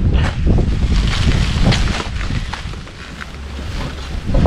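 Wind buffeting the microphone as a low rumble, with scattered rustles and crackles of cardboard and packing paper as a parcel is opened by hand.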